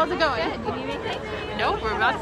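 People chatting off-microphone: indistinct conversation, voices that are not clear enough to make out words.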